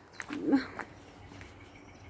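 A single brief voiced call with a bending pitch about half a second in, over faint outdoor background.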